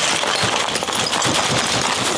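Shards of a broken mirror rattling and sliding inside its cardboard box as the box is tilted and carried: a dense, continuous clatter of small clinks.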